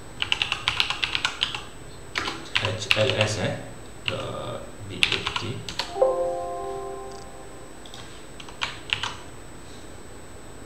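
Rapid typing on a computer keyboard in several bursts. About six seconds in, a short Windows alert chime sounds as a Notepad warning dialog pops up. A few more key or mouse clicks follow near the end.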